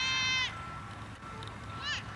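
High-pitched shouting at a youth football game as the teams set at the line: one long held shout in the first half second, then a short rising shout near the end.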